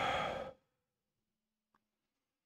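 A man's heavy sigh into a close microphone, a breathy exhale lasting about half a second, followed by near silence.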